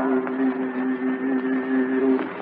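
A male Qur'an reciter holds one long, steady note, drawn out at the end of a phrase of recitation. It is heard through an old, narrow-band archival recording with a steady hiss and faint crackle.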